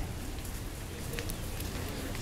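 Steady outdoor street background noise: an even hiss over a low rumble, with a few faint ticks.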